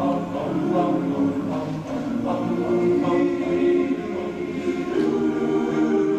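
Large all-male a cappella choir singing a slow song, with the men's voices holding sustained chords under the sung lyric.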